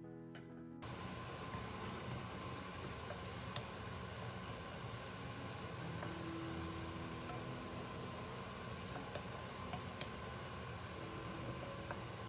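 Bracken shoots and wild onions sizzling as they stir-fry in a pan, starting abruptly about a second in, with a few light clicks of the wooden spatula. Background music plays at the start and continues faintly under the sizzle.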